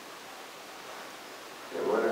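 Quiet room tone: a faint, steady hiss with nothing distinct in it. A voice starts talking near the end.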